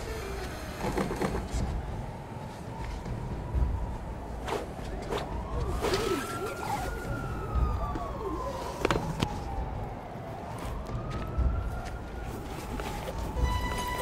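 A siren wailing, slowly rising and falling in pitch over several seconds, under a film soundtrack, with a few sharp knocks; a steady held musical note comes in near the end.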